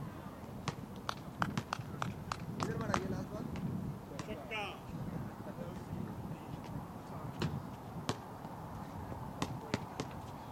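A few people clapping after the winning boundary: a ragged run of handclaps over the first three seconds, then only the odd single clap, over faint background voices.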